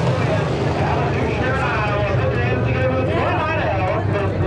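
Sport modified race cars' engines droning steadily around a dirt oval, with people's voices talking over the engine noise from about a second and a half in.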